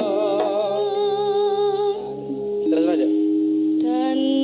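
A sinden (female Javanese singer) holds long notes with a wavering pitch over steady, held accompaniment notes. Her voice stops about two seconds in, leaving a lower held note, and she starts singing again near the end.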